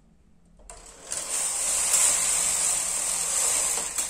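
Brother KH930 knitting machine carriage pushed across the needle bed in one pass, knitting a row: a steady, even mechanical noise that starts just under a second in and stops sharply just before the end as the carriage reaches the end of the bed.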